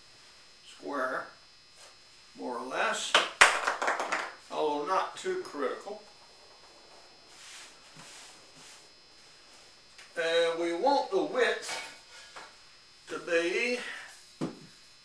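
A man's voice speaking in short spells, with brief rustling and a few sharp taps of a canvas drop cloth being spread and smoothed on a table; the taps are loudest about three seconds in.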